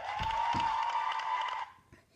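A single long high note held at a steady pitch for about a second and a half, then cut off suddenly. Two dull thuds of bare feet on the floor sound early on.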